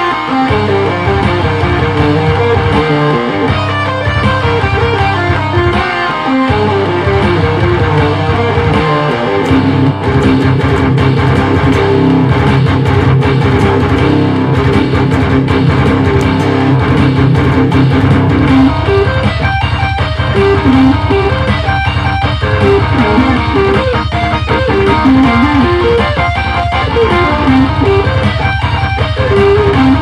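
Distorted Schecter C-1 Plus electric guitar playing metalcore riffs, with palm-muted chugs and picked note runs, over a programmed drum backing track. The recording is a little muffled.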